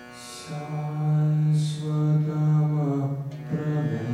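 Devotional mantra chant: a low voice holding long notes over Indian classical-style music.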